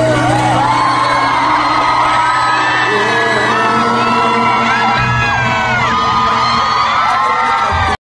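Live band music with a crowd of fans screaming and whooping loudly over it, many high voices gliding up and down at once.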